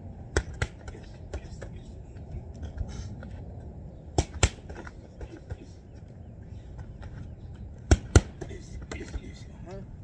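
Boxing gloves smacking against focus mitts in quick one-two pairs: three loud double hits spaced about four seconds apart, with a few lighter hits in between.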